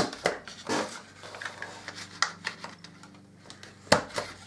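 Handheld corner rounder punch clicking as it cuts the corners of card, with light paper handling between the clicks; the sharpest clicks come at the very start and just before the end.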